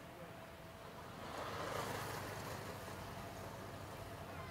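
A motor vehicle passing on the beachfront road, its noise swelling about a second in and easing off after about two seconds, over steady street ambience.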